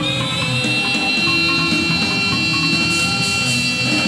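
Live band music: a long high note held steady over plucked guitar notes and a low instrumental backing.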